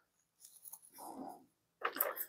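Faint rustling of dry grapevine twigs being handled and laid into a plastic enclosure among dry leaf litter, with a light click near the end.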